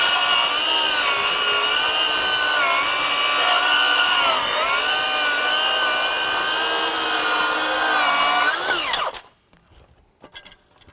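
DeWalt DCS570 20 V 7¼-inch cordless circular saw with a thick-kerf blade, ripping along a length of dimensional lumber. Its whine sags in pitch a few times as the motor loads up in the cut. Near the end the cut finishes and the blade spins down with a falling whine.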